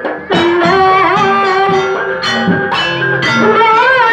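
Banyuwangi gandrung dance music: a sustained, slightly wavering melodic line enters about a third of a second in, over regular drum strokes.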